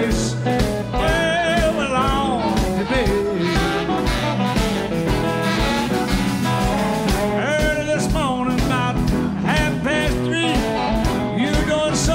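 Live blues band playing: a harmonica leads with bent, wailing notes over electric guitars, bass and a steady drum beat.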